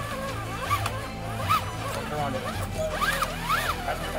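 Scale RC rock crawler's electric motor and geartrain whining in short bursts, the pitch rising and falling with each throttle blip as it climbs a rock, over background music.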